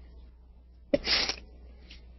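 A short, sharp puff of breath noise from a person close to the microphone about a second in, starting with a click, over a faint low microphone hum.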